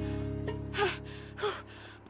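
A girl's two weary, breathy gasps about half a second apart, from exhaustion, over a sustained background-music chord that fades away.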